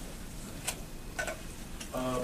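A few short, soft clicks over a steady low room hum, with a man's voice starting right at the end.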